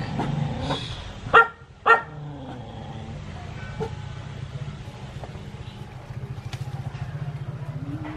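Dog barking twice in quick succession, about a second and a half in, over a steady low hum.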